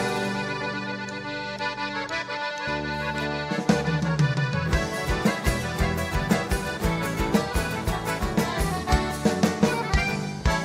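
Live chamamé band playing an instrumental passage led by accordion, with guitars, bass and drum kit. The accordion holds long chords at first; a bass line enters and a steady dance beat starts a few seconds in.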